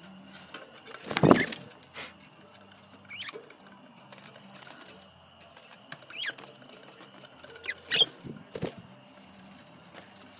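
Pet budgerigars in a cage giving short chirps every couple of seconds, among small clicks and scratches, with one loud rustling burst about a second in.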